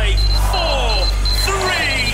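Studio audience chanting a countdown in unison, one number about every second, over music with a high, steady beeping tone.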